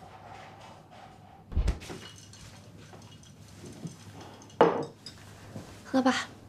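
A glass or cup being handled in a small room: a low thud about one and a half seconds in, light clinks, then a sharp knock of the glass set down on a table near the end.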